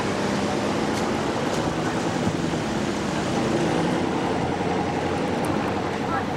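Car engines running steadily as vehicles pull away down the road, a continuous low engine hum under road and air noise.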